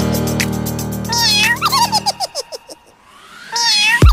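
Electronic dance track with cat meows laid into it: a meow about a second in, then the backing music drops away about halfway through. A rising sweep and another meow come just before the beat returns at the end.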